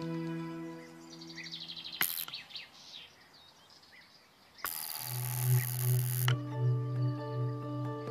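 A spark-gap radio transmitter firing: a harsh crackling buzz lasting about a second and a half, near the middle. It follows a sharp click about two seconds in. Background music with sustained tones runs underneath and comes back with a low pulsing note after the crackle.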